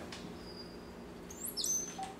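A brown-headed cowbird's high, thin whistle sliding down in steps, about one and a half seconds in, after a fainter short whistle near the start. A faint steady low hum lies underneath.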